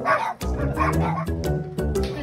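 Large dog barking and yipping in play over background music.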